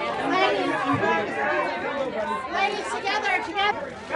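Several people talking at once: a steady murmur of overlapping chatter with no single clear voice.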